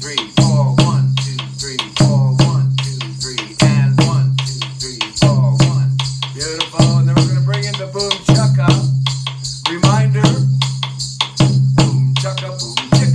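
Djun djun bass drum played with sticks in a steady West African play-along rhythm: a deep, ringing open bass note about every second and a half under a dense pattern of sharp stick strikes, with hand-played djembes joining.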